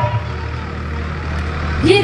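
Steady low hum through a live stage PA system, with no music playing. Near the end a woman's amplified singing voice begins.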